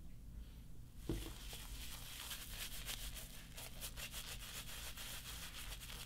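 Faint scratchy rubbing of a shaving brush working soap lather over a stubbled cheek, with a soft knock about a second in.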